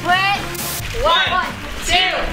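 Several voices shouting out a count over background music, with a little water sloshing.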